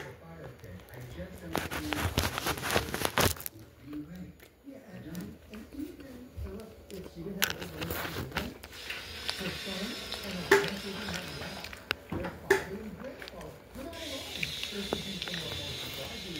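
A man chewing a mouthful of French dip sandwich close to the microphone, with a run of wet clicks and smacks as he bites in and scattered ones afterwards; faint voices talk in the background.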